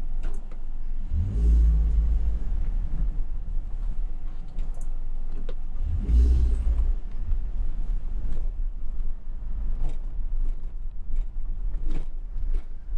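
Car driving slowly over a railway level crossing, heard from inside the car: a steady low rumble with two stronger low surges, about a second in and again about six seconds in, and a few short clicks and knocks later.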